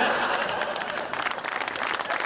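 Studio audience applauding: dense hand clapping that eases off a little toward the end.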